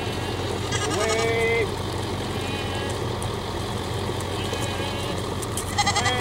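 A mixed flock of goats and sheep bleating as it moves along, with one loud bleat about a second in and fainter calls later, over a steady low rumble.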